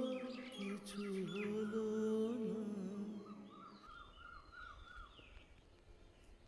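Slow background music, a single wavering melody line that fades out about two-thirds of the way through, with birds chirping.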